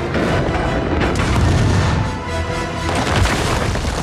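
Action-film sound mix: heavy booms and continuous rumble of landmine blasts and a crashing armoured vehicle, with dramatic score music over it. A sharp impact lands about three seconds in.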